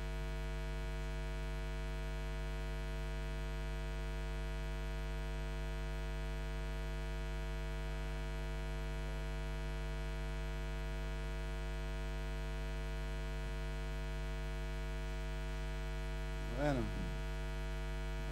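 Steady electrical mains hum in the sound system, a low buzz with many evenly spaced overtones that never changes. A brief voice sounds near the end.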